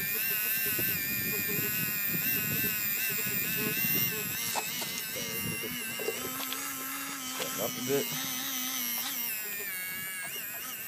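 Small electric RC scale winch motor whining with a wavering pitch as it reels in its line under the load of a crawler being pulled onto a trailer.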